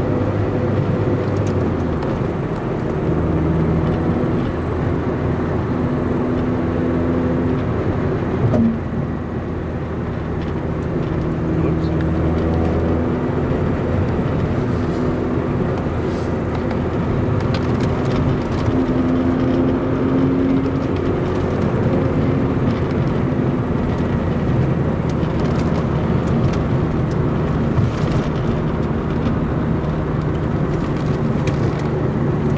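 Car engine and road noise heard from inside the cabin while cruising, the engine note rising and falling with throttle and speed. A single brief knock about a third of the way through.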